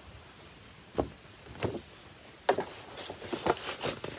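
Handling noises: a series of short knocks and rustles, growing busier toward the end, as a large cross-stitch sampler is set down and a paper pattern booklet is picked up.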